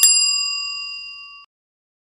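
A bell-like ding sound effect rings out and fades away steadily over about a second and a half.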